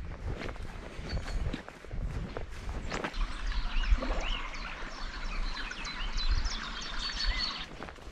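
Songbirds chirping and singing, mostly in the second half, over a low rumble of wind on the microphone, with footsteps rustling through long grass in the first few seconds.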